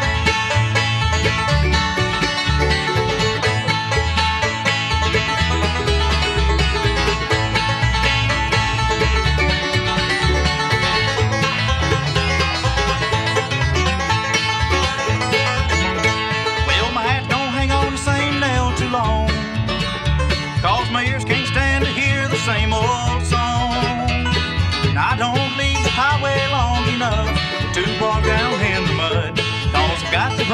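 Bluegrass band playing an instrumental introduction, banjo prominent over guitar, with a bending, wavering lead melody coming forward about halfway through.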